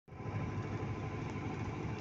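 A truck engine running steadily with road noise while driving, heard from inside the cab.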